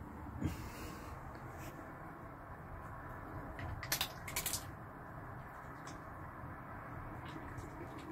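Faint background with a few short, sharp clicks and knocks: one about half a second in and a quick cluster around four seconds in.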